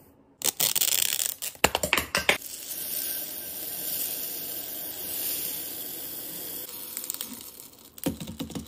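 Small scent-booster beads pouring from a plastic bottle into a glass jar: a steady hissing stream of beads that tapers off near the end. It is preceded by a couple of seconds of clicks and rattling as the bottle is handled.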